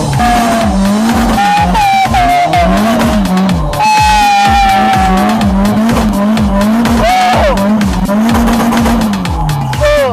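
Tyres squealing in several long squeals as a Nissan drift car slides sideways, over background music with a steady beat.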